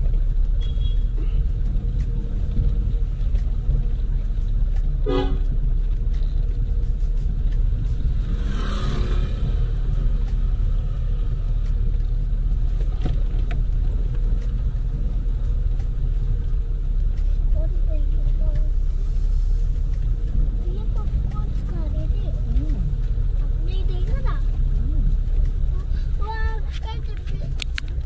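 Steady low rumble of a car's engine and tyres heard from inside the cabin while driving on a narrow road. A car horn sounds briefly about nine seconds in.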